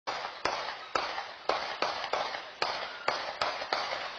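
A rapid, uneven barrage of about ten gunshots, sharp cracks each trailing off in an echo, heard through a home security camera's microphone.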